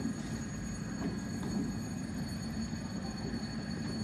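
SNCB Siemens Desiro ML electric multiple unit moving slowly through the station, a steady low rumble with a faint high whine above it.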